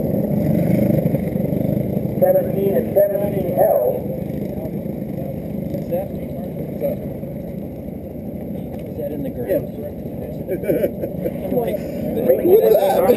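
Racing kart engines running on the track, a steady drone that weakens after about four seconds, with people talking in the background.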